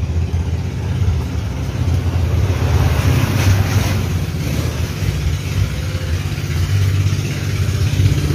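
An engine running steadily nearby, a continuous low hum, with some added higher-pitched noise around three to four seconds in.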